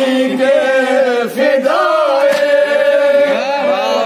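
A group of men chanting an Urdu nauha (mourning lament) in unison, holding one long note through the middle. A few sharp slaps sound among the voices.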